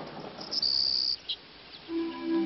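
A cricket chirping: one high-pitched trill of under a second starting about half a second in, then a brief second chirp.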